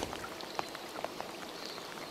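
Light rain falling on the river: a steady soft hiss with faint scattered ticks.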